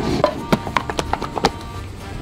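Gas hob igniter clicking rapidly, about eight sharp clicks in just over a second, as the burner is lit, over background music.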